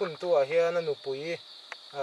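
A man speaking, with a steady high-pitched drone of insects behind him.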